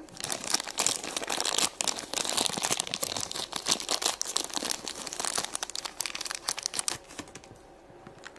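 A thin wrapper crinkling and rustling as hands pull it open to unwrap a small toy, in a dense run of crackles that dies down about seven seconds in.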